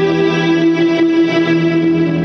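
Live rock band playing, with steady held notes from effects-laden electric guitar over a sustained chord.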